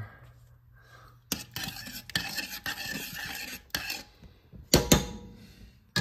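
Kitchen handling sounds around a stainless saucepan on the stove: a couple of seconds of rustling, clattering noise, then a sharp, loud knock of metal about five seconds in.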